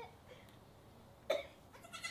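Newborn Nigerian Dwarf goat kids bleating faintly in short calls, with a brief sharp cough-like sound a little past halfway.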